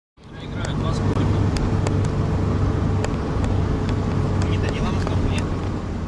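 Armoured vehicle engine running steadily, with scattered clicks and rattles; it fades in just after the start.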